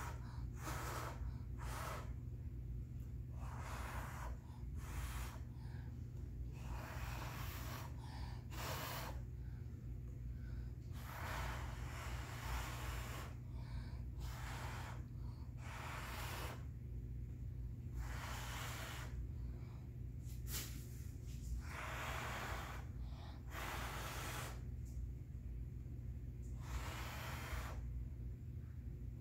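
A person blowing short puffs of breath by mouth onto wet, fluid acrylic paint to push it across a canvas, one puff every second or so, with breaths drawn in between. A steady low hum runs underneath.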